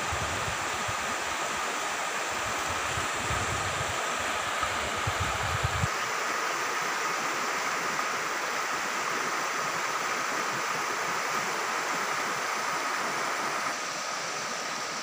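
Rushing of a river in flood, fast muddy water running in a steady wash. A low rumble sits under it for about the first six seconds, then cuts off suddenly.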